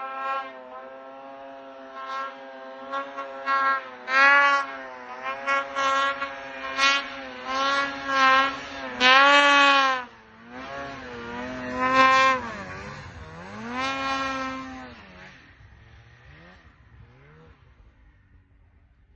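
Snowmobile engine revving in repeated bursts of throttle, its pitch rising and falling as the sled works through deep powder snow, then fading away near the end.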